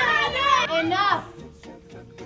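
Several children's voices arguing over one another in an unintelligible jumble, breaking off a little over a second in, with background music underneath.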